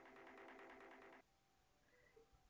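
Faint background music with steady held notes that cuts off about a second in, leaving near silence.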